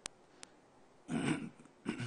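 Two faint clicks, then about a second in a short, breathy non-speech sound from a man's voice close to a desk microphone.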